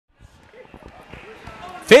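Faint dull thuds at irregular intervals, the sound of bodies and feet landing on a wrestling ring's canvas, with faint crowd voices in a gymnasium. A man starts speaking right at the end.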